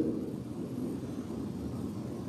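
Steady low rumble of room noise, with no speech and no distinct events.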